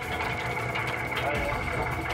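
A boat's hydraulic system running with a steady high whine over the engine's drone as the steel stabilizer is raised out of the ice.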